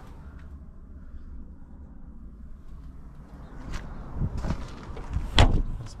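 The side-hinged rear door of a Lada Niva Travel being swung shut: a few light knocks, then one loud slam near the end.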